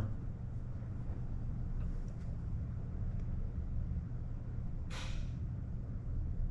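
Steady low rumble, with a brief hiss about five seconds in.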